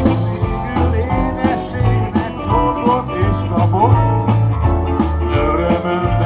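Live rock band playing a song with a steady drum beat, a bass line and a melodic lead line over it.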